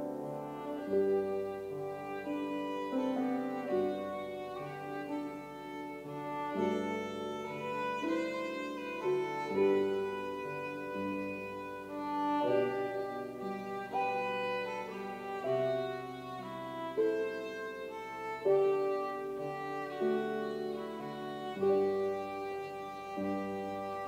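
Violin bowed in a slow melodic line, over lower held accompaniment notes that change every second or two.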